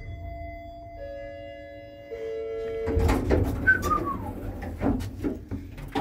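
Passenger lift arriving at its floor: an arrival signal of steady tones, a new tone joining about every second, cut off about three seconds in. Then the car doors open with clattering knocks and a short falling squeal, followed by more knocks as the landing door is unlatched and pushed.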